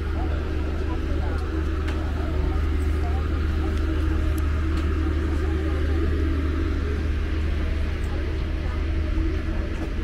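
A moored passenger cruise boat's engine idling with a steady low rumble, with people talking.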